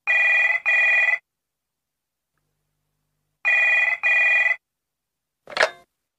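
Telephone ringing with the British double ring, two rings of two short bursts each about three seconds apart. A short click near the end as the call is answered.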